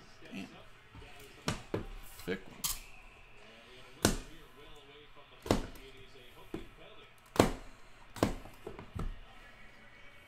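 A small cardboard trading-card box being handled and knocked on a hard surface: about ten sharp, irregular taps and knocks, the loudest about seven seconds in.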